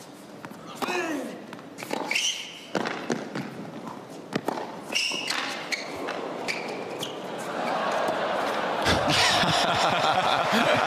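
Tennis rally on an indoor hard court: sharp racket-on-ball hits about once a second, with short shoe squeaks on the court. Crowd noise swells over the last couple of seconds.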